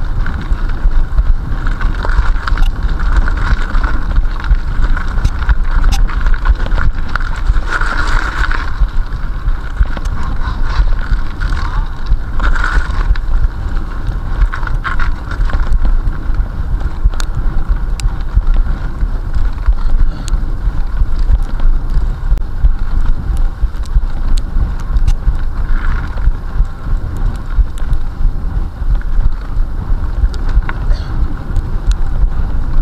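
Mountain bike ridden fast along a rough forest dirt track: heavy wind buffeting on the action camera's microphone over the rumble of knobby tyres, with frequent short clicks and rattles from the bike going over bumps.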